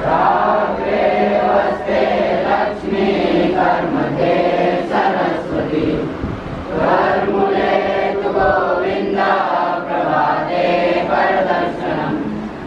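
A large group of boys singing a chant together in unison, starting abruptly and running in phrases with a brief break about six seconds in.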